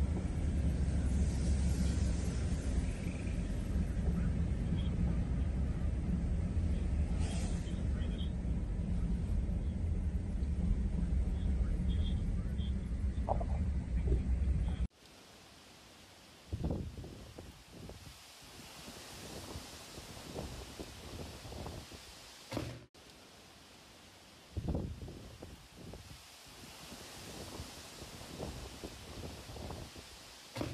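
Steady low rumble of road and engine noise inside a moving car on a wet road, cutting off abruptly about halfway through. It gives way to a quieter, steady hiss of heavy rain, with gusts of wind buffeting the microphone in irregular surges.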